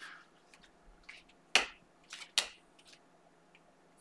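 Sharp snaps and clicks of glossy trading cards being flicked through a stack by hand: two louder snaps about a second and a half in and again under a second later, with a few fainter clicks around them.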